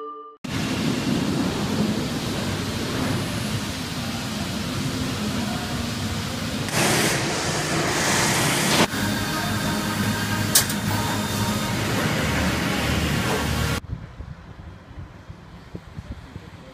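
Loud, steady roar of industrial background noise in an aircraft fuselage assembly hall, with a louder hissing stretch of about two seconds midway and a sharp tick a little later. It cuts off suddenly near the end to a much quieter outdoor background.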